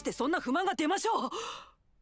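A man's voice exclaims a short line in an anime's dialogue, then trails off in a breathy sigh. The sound dies away just before the end.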